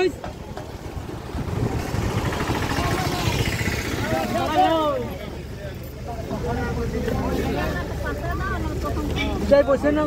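Bus engine running with a steady low rumble under the overlapping chatter of passengers in a crowded bus cabin.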